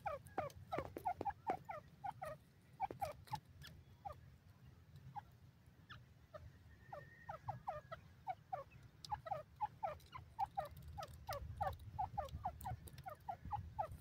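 Grey francolin giving soft clucking calls: short falling notes, several a second, with sharp clicks among them and a low rumble underneath.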